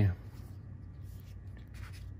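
Dragon Ball Super trading cards sliding and rubbing against each other as the top card is worked off a hand-held stack, with faint, brief rustles about half a second in and again near the end.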